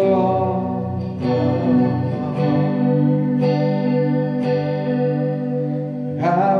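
Peavey Raptor Plus electric guitar played through a Roland Cube-40GX amplifier, a chord struck about once a second and each left to ring.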